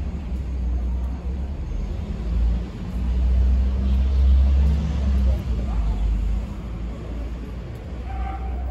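A motor vehicle passing on the street, its low engine rumble swelling to its loudest about halfway through and easing off near the end.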